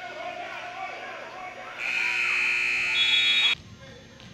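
Gym scoreboard buzzer sounding one steady, loud blast of about a second and a half, which cuts off suddenly, after people's voices in the gym.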